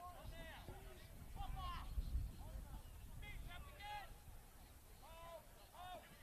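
Faint, distant shouts of rugby league players calling to each other across the field: about eight short calls, over a low rumble of wind on the microphone.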